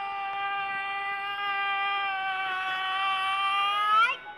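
Small dog whining in one long, high, thin note that sounds like a mosquito's whine, rising in pitch at the very end.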